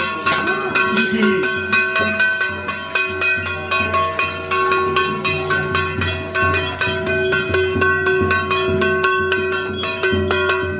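Ritual percussion of a Dao ceremonial procession: fast, continuous strikes on ringing metal instruments, their tones held between strokes, with a drum beating beneath.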